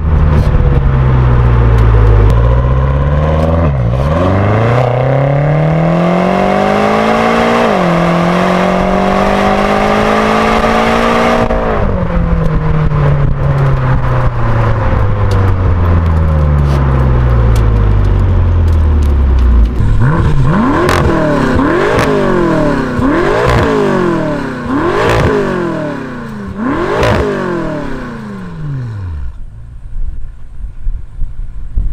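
BMW M6 Gran Coupé's 4.4-litre twin-turbo V8 heard at the exhaust while driving: it slows, then pulls hard through a gear with one upshift about 8 seconds in, then lifts off and winds down. From about 20 seconds in the engine is revved in a series of quick blips, each rising and falling, about five in all.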